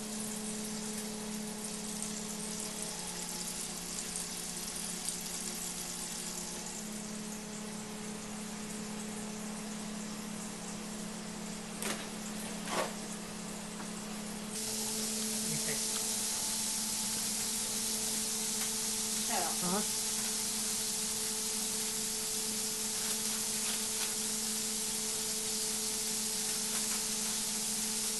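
Giant hamburger patty frying on an electric griddle: a steady sizzling hiss, which gets louder about halfway through, over a low steady hum.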